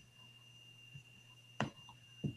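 Quiet pause holding a faint steady high-pitched whine and a low hum, broken by a single short click about one and a half seconds in.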